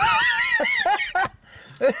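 A person laughing in a high, squealing voice for about a second, followed by a short second laugh near the end.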